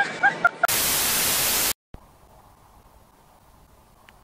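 A burst of static white noise about a second long, the transition effect between clips, starting and stopping abruptly. Just before it come a few short voice calls, and after it only faint background hiss.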